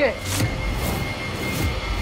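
Dramatic TV background score: a low rumbling drone under a thin steady high tone, with a few swelling whooshes.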